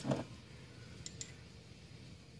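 Two faint, light clicks about a second in from metal AK-pattern gun parts, the bolt and carrier, being handled, over quiet room tone.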